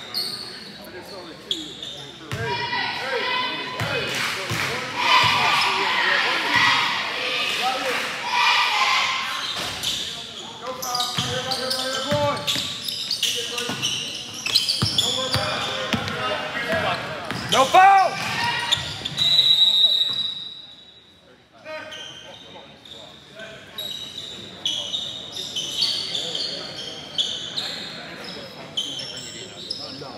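Basketball game in a gymnasium: a ball bouncing on the court and scattered knocks from play under steady shouting and chatter from players and the crowd. A short, high whistle blast comes about two-thirds of the way through, after which the noise briefly drops.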